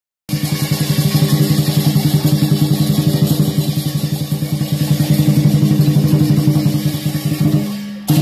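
Chinese dragon-dance drumming: a drum beaten in a fast, steady rhythm, starting suddenly just after the start.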